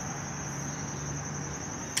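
Insects, likely crickets, making one steady high-pitched drone, with a faint low hum partway through and a single sharp click near the end.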